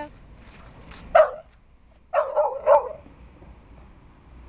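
A dog barking: one sharp bark a little after a second in, then a quick run of three barks near the middle.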